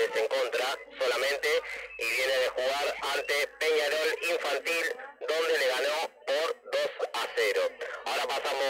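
Speech only: a male commentator talking steadily in Spanish, in a radio-broadcast style.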